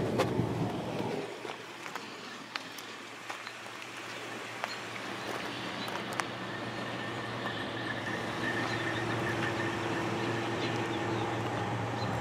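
Street ambience with a motor vehicle's steady engine hum that slowly grows louder through the second half, with a few faint clicks.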